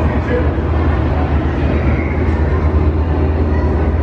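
A steady low rumble with a murmur of crowd noise over it.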